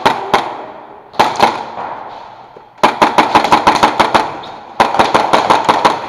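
Airsoft guns firing: a couple of single shots at the start and a second pair about a second in, then two rapid strings of about ten shots a second, each lasting about a second, one near the middle and one toward the end.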